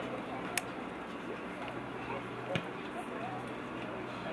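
Faint, distant voices of players and onlookers calling across an open football pitch over a steady low hum, with two sharp knocks, about half a second and two and a half seconds in.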